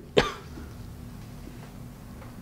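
A man's single brief cough just after the start, followed by a low steady hum of room tone.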